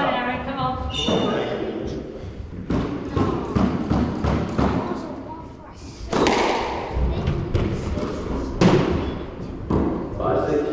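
Squash rally: a run of sharp, irregularly spaced ball strikes off racquets and the walls, echoing in the court. The loudest strikes come about six and eight and a half seconds in.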